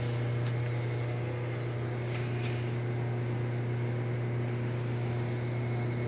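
Steady low mechanical hum of a running machine in a workshop, with a couple of faint light clicks.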